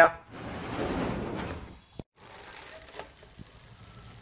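Bicycle drivetrain of a Giant Escape R3 turned by hand on an 8-speed Shimano cassette: the chain runs over the sprockets and derailleur with a whirring rush, then there is a click about two seconds in and the sound drops to faint ticking as the rear wheel spins on.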